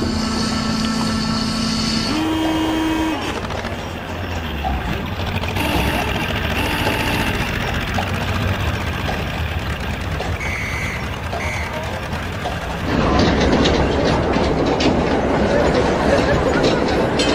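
City and harbour ambience: a low, steady horn-like tone sounds for about two seconds, then a slightly higher one briefly, over continuous traffic noise. About thirteen seconds in, a louder wash of street and crowd noise with clattering takes over.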